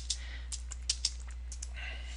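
Typing on a computer keyboard: an uneven run of quick key clicks, over a steady low hum.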